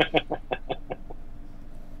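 A man laughing: a quick run of about seven short chuckles that fade out within the first second, followed by a faint steady hum.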